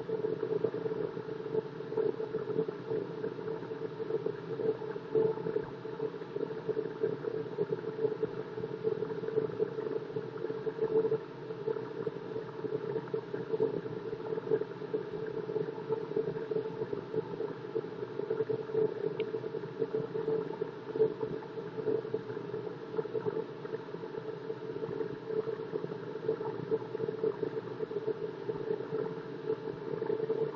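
Delta wood lathe running steadily with a hum, while a hand-held turning tool cuts into the spinning block of HDPE plastic, giving an uneven scraping hiss as it takes off shavings at the end of the block.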